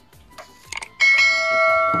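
A bell-chime sound effect strikes once about a second in. It rings with several steady tones that fade slowly, the ding of a subscribe-button bell animation.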